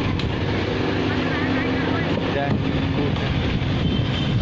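A vehicle engine running steadily, with wind on the microphone.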